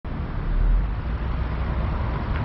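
Steady low rumble of a vehicle's engine and road noise as it rolls slowly forward.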